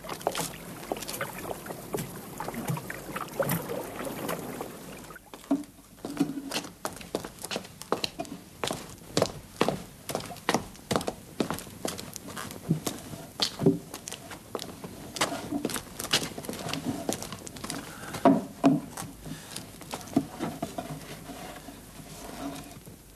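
Footsteps and irregular wooden knocks and thuds as workers carry and set down wooden tubs. The sharp knocks come every second or so, with a brief lull about five seconds in.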